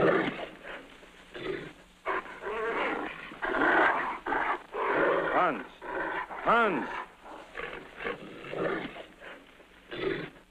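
A man making dog-like animal noises: a run of rough growls and snarls, with two short whining cries that rise and fall in pitch about five and a half and six and a half seconds in.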